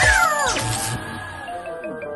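Cartoon soundtrack music with sliding tones that fall in pitch over it, like a comic whining sound effect.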